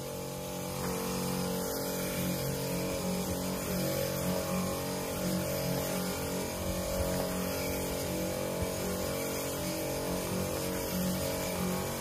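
Motor-driven pressure sprayer running steadily with a hiss from the hose wand as disinfectant is sprayed onto a gravel lane.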